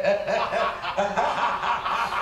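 People chuckling and laughing.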